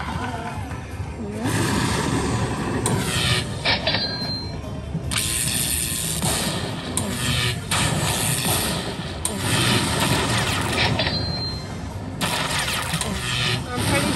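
Slot machine playing its win music and jingles while the bonus win total counts up. Short high chimes sound about four seconds in and again near eleven seconds, over casino background noise.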